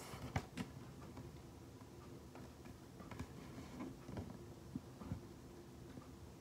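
Faint, scattered clicks and light knocks of small objects being handled by hand, two of them in the first second, over quiet room tone.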